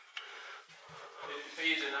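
Faint voices of people talking further off in a quiet room, with a single light click just after the start.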